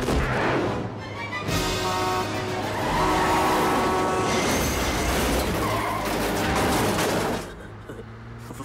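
Film soundtrack of a highway truck crash: a long pitched screech starts about a second and a half in and holds for about three seconds, followed by crashing and booming impacts, all over film score music. It dies down shortly before the end.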